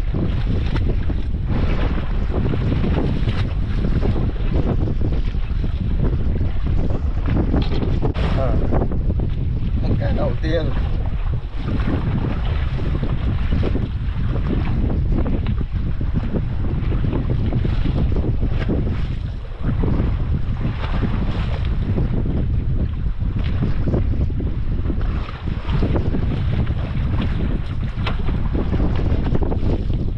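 Steady wind rumbling on the microphone over the wash of open-sea waves around a small fishing boat.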